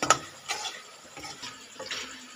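Flat metal spatula scraping and knocking against a wok while chicken pieces sizzle in oil. The loudest stroke is a sharp knock just after the start, with softer scrapes about half a second in and again near the end.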